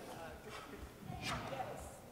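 Faint, indistinct voices echoing in a large gymnasium, with one short knock a little over a second in.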